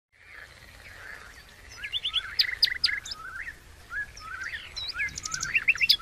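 Several wild songbirds chirping and singing at once in woodland: a busy chorus of short, high calls and quick trills that grows louder about two seconds in.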